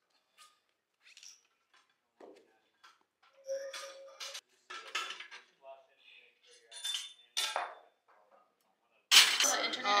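Loaded steel barbell clinking and rattling in the rack's hooks as a lifter sets up under it on a bench: a series of separate metallic clinks, some ringing briefly.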